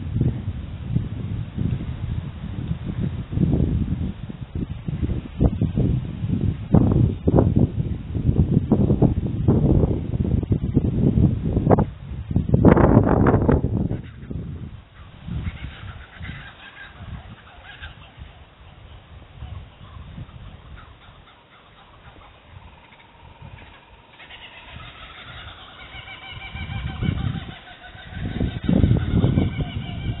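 Wind buffeting the microphone in uneven gusts, easing off about halfway through. A bird calls with high pitched notes briefly after that and again over the last several seconds.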